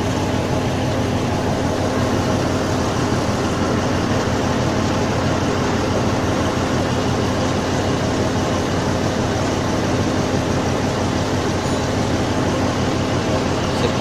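Mobile crane's diesel engine running steadily at an even speed while it holds a load on its hook.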